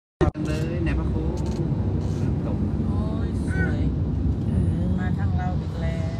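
Steady low road and engine rumble heard inside a moving vehicle's cabin, with people talking over it. A short sharp knock comes at the very start.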